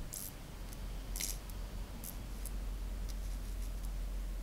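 Small plasma spark at the top of a mini Tesla coil crackling in short, irregular snaps over a steady low hum.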